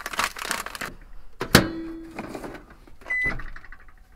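A microwave oven being loaded: a plastic rice pouch rustles as it is set inside, the door shuts with a sharp clack that rings briefly, and the keypad gives one short beep near the end.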